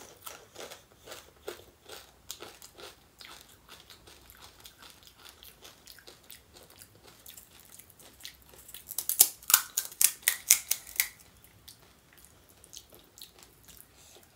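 Close-up mouth sounds of chewing crisp, hollow fried puris of panipuri, with soft crunches through the first half. A run of louder crisp crackles comes about nine to eleven seconds in.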